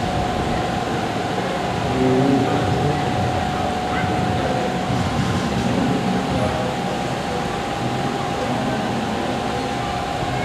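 A steady, noisy hum with a thin, unchanging whine running through it, and faint murmured voices about two to three seconds in.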